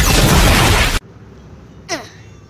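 Explosion sound effect: a very loud blast that cuts off suddenly about a second in, followed by a brief voice sound near the end.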